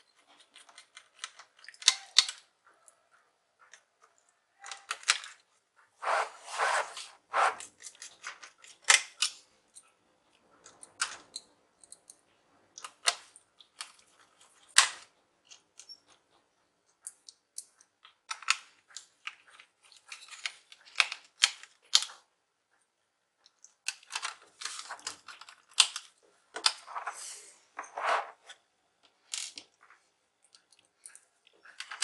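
Irregular sharp clicks and light rattles of small laptop screws and hand tools being handled against a plastic laptop base. They come in scattered clusters with short quiet gaps between them.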